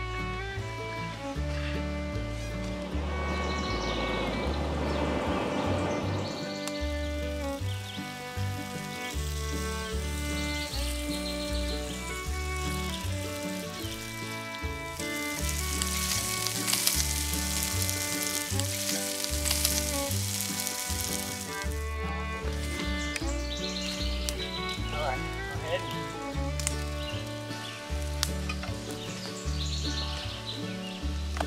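Pieces of buffalo tongue frying in a cast-iron skillet over a campfire. The sizzle is loudest for about seven seconds in the middle, with a shorter burst about four seconds in. Background music with a steady bass line plays throughout.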